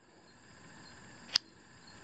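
A single sharp click from a small metal zoom flashlight being handled, a little past halfway through, over a faint steady hiss.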